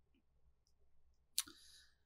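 Near silence with faint ticks from knitting needles being worked, and one sharp click about a second and a half in.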